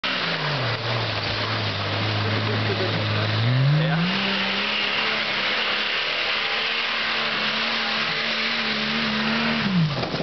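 Jeep Wrangler YJ engine run hard while spinning doughnuts in dirt, over a steady hiss of spinning tyres. The revs dip and hold low for the first few seconds, climb at about three and a half seconds and hold higher, then fall away just before the end.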